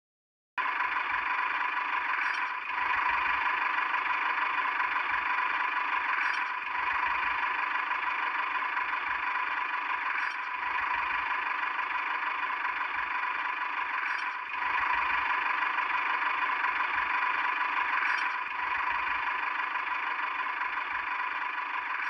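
Small electric motor and gearbox of a homemade toy tractor whirring steadily as it pulls a plow through sand, with a slight catch about every four seconds.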